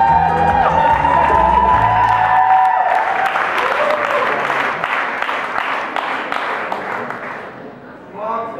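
Recorded music with a strong bass line and a held melody stops about three seconds in, giving way to audience applause that fades away near the end.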